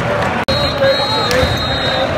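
Large soccer stadium crowd of home supporters singing and chanting together, with a supporters' drum thudding underneath. The sound cuts out abruptly for an instant about half a second in.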